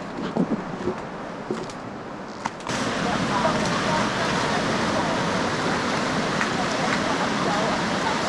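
Outdoor ambience that changes suddenly about two and a half seconds in to a steady rush of ocean surf and wind, with faint voices of people in the water.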